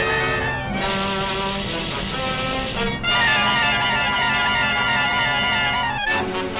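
Orchestral cartoon score led by brass, playing loudly and steadily. About halfway through it shifts to a high held note over quick, wavering figures.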